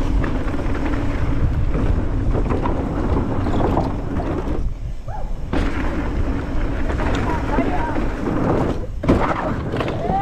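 Wind rushing over the microphone and tyres rumbling over a dirt trail as a mountain bike descends at speed, with the bike rattling and knocking over bumps. A sharp jolt comes about nine seconds in as the bike rolls onto a wooden ramp.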